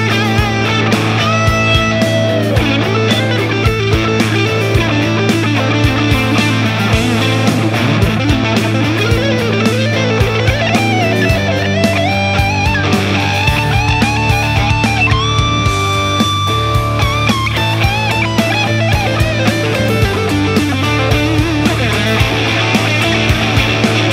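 Gibson SG Standard Oxblood electric guitars played with overdrive in a rock/metal style: a driving rhythm part with a lead line on top, including a few long held notes.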